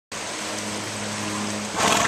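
Shallow river water rushing over a rocky riffle, a steady rushing noise with a steady low hum underneath; the noise swells briefly just before the end.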